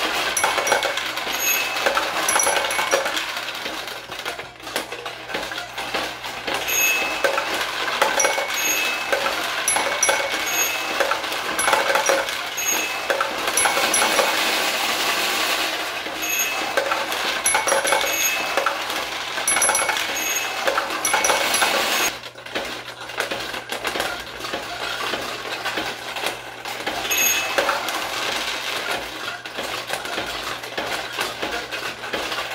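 1973 Nishijin Model A pachinko machine in play: steel balls clattering and clicking down through the pins, with short ringing tones about once a second. The clatter thickens into a dense rush for a couple of seconds about halfway through, then eases off.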